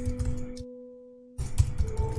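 Typing on a computer keyboard over soft ambient background music with long held notes. The typing pauses for a moment about halfway, then starts again abruptly.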